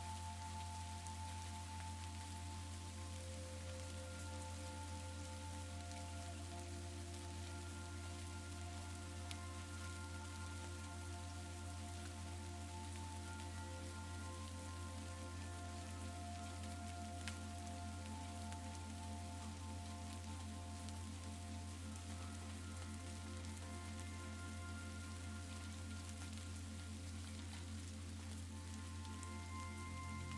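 Steady rain falling, layered with slow, soft ambient music of long held notes that change slowly over a steady low drone.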